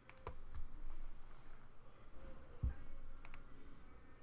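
Computer mouse and keyboard clicks: a few sharp clicks near the start and another pair a little after three seconds, with two dull low thumps in between.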